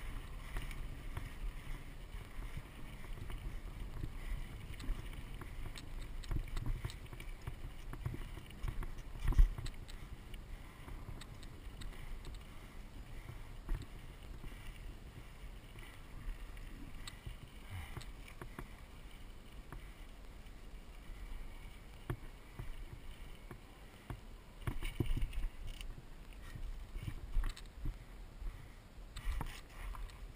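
Mountain bike rolling fast down a dry dirt trail: wind rumbling on the camera microphone and tyres crunching over the dirt, with the bike rattling and knocking over bumps. One louder knock comes about nine seconds in, and a run of harder jolts near the end.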